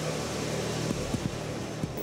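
F/A-18 Hornet's twin jet engines at full power during a carrier catapult launch: a steady, noisy rush that grows deeper about a second in as the jet is shot off the deck.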